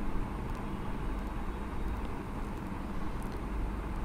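Steady background noise with a low, even hum, and no distinct sound events.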